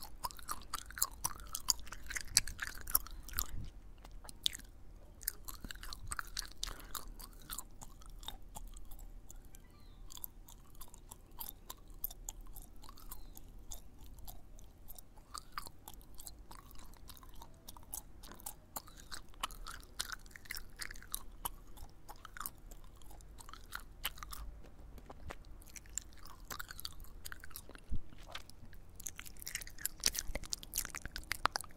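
Gum chewing and wet mouth sounds close-miked at the lips: a steady run of irregular smacks and clicks, with a few louder ones near the start and near the end.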